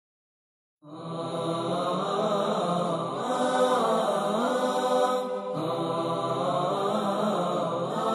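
Melodic vocal chant with held, sliding notes. It starts about a second in and has a short break just past the middle.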